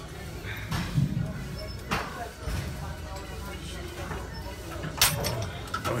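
Gym cable rope exercise: a lifter's effortful breathing through the last reps over a steady room rumble, with a few sharp knocks; the loudest, about five seconds in, comes as the set ends and the cable's weight stack is let go.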